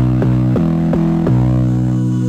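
House music from a DJ mix: a run of about five low, bass-heavy notes struck in quick succession, with the treble filtered away.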